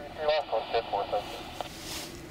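Air traffic control radio transmission: a voice speaking briefly over the radio, then steady radio hiss with a swell of noise as the transmission closes near the end.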